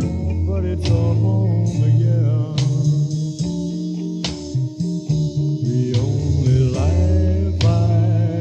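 Blues-rock band recording in an instrumental stretch: electric guitar playing over bass guitar and drums, with sharp drum accents about every one and a half to two seconds.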